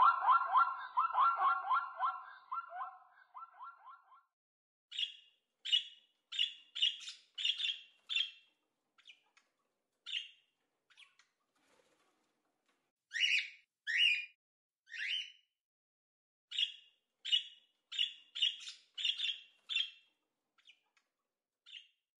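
A zebra calling, a rapid run of pulsed, pitched barks that fades out over the first four seconds. It is followed by a budgerigar's short, sharp chirps, singly and in quick runs of several.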